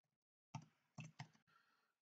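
Near silence, broken by three faint short clicks about half a second, one second and just over a second in.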